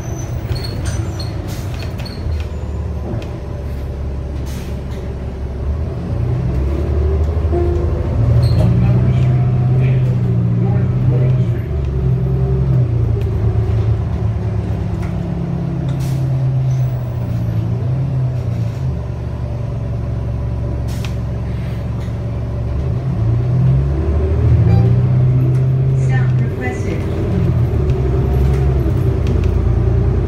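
Cummins L9 inline-six diesel and Allison automatic transmission of a 2019 New Flyer XD35 bus, heard from inside the passenger cabin while driving. The engine drone rises and falls in pitch as the bus accelerates and changes gear, growing louder about eight seconds in and again past the twenty-second mark, with a few short rattles.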